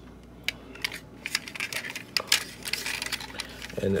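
Two small die-cast metal model cars being handled and shifted in the hands, giving a run of light, irregular clicks and taps as they knock against each other and the fingers.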